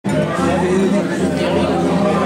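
Indistinct chatter of several people talking at once around a dining table, voices overlapping at a steady level.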